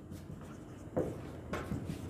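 Marker pen writing on a whiteboard: a few short scratchy strokes, the most distinct about a second in and a quick cluster about a second and a half in.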